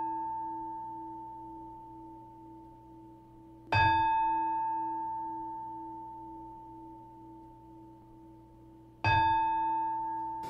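A meditation bell struck twice, about four seconds in and again near the end, each time ringing with a clear pure tone that slowly dies away. It is still ringing from a strike just before.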